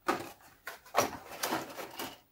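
Handling of a plastic model kit: a few short knocks and scrapes as the cardboard kit box and its grey plastic sprues are moved and the box is picked up.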